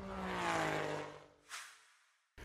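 Logo-animation transition sound effect: a swelling whoosh with a steadily falling tone that fades out after about a second, followed by a short soft swish about a second and a half in.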